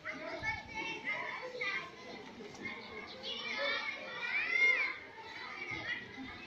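Children's voices chattering and calling out, with a louder high rising-and-falling call about four and a half seconds in.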